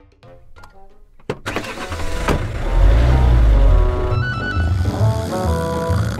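Cartoon soundtrack: a deep rumbling sound effect that swells in after a sharp click about a second in and stays loud, with background music over it.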